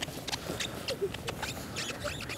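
Winter boots stepping and shifting on wet, glazed ice: a scatter of light irregular clicks and ticks, with two faint brief squeaks about half a second and a second in.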